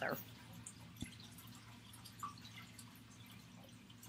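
Near silence: faint room tone with a low steady hum, broken by a single soft click about a second in and a small pop about a second later.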